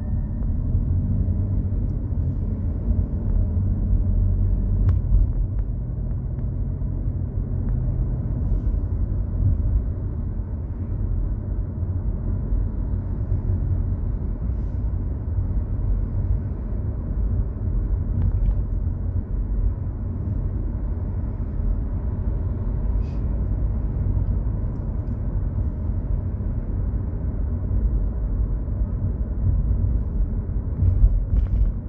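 Steady low rumble of a car's engine and tyres on the road, heard from inside the moving car's cabin, with a faint engine hum in the first few seconds and a few faint clicks.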